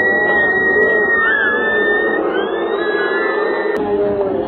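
Long, shrill whistles over the noise of a large crowd: one held steady for about two seconds, then a second, slightly lower one until near the end.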